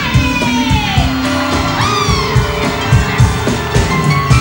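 Live band music with a steady beat and keyboard lines, and a large crowd cheering.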